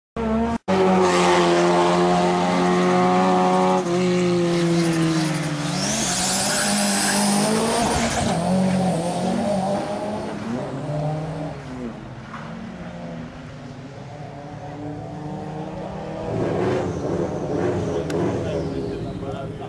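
A hillclimb competition car running hard at high revs, its engine pitch dropping about four seconds in, then a high tyre squeal for about two seconds as the engine sound fades up the course. Another car's engine rises again near the end.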